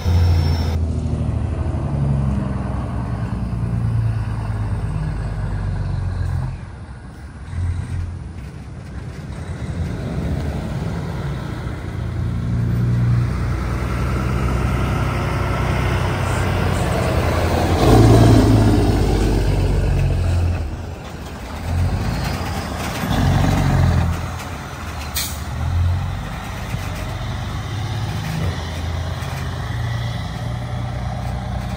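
Heavy diesel engines of a semi truck and a wheel loader working under load. The sound swells and dips with throttle and gear changes, and is loudest about two-thirds of the way through as the truck drives close by.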